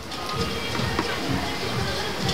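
Moong dal chilla sandwiches sizzling on a large flat iron griddle, with music playing over it.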